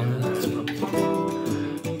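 Solo acoustic guitar being strummed, the chords changing a few times.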